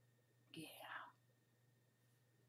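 A short whisper from a woman, about half a second long, a little after the start, over near-silent room tone with a faint steady hum.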